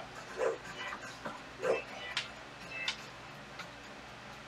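A dog making about four short sounds, one after another, over faint steady music.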